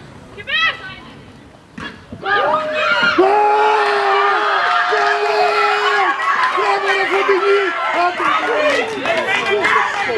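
Several high-pitched young women's voices shouting and cheering together in celebration of a goal, with long held calls overlapping. It starts about two seconds in after a quieter moment.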